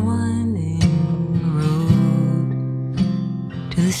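Acoustic guitar strumming slow chords as a folk-song accompaniment, with a woman's held sung note fading out about half a second in.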